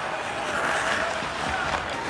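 Ice hockey rink game noise from the arena broadcast feed: a steady wash of rink and crowd noise, with a faint knock about one and a half seconds in.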